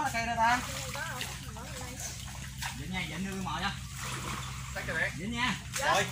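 Men's voices calling out in short bursts over water sloshing and splashing around a man wading waist-deep.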